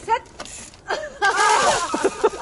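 People's voices crying out: a brief call just after the start, then a loud, drawn-out shout from about a second in, several voices overlapping.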